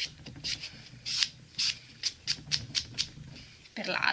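A sponge nail buffer block scuffing across a gel nail in short, irregular strokes, about two or three a second.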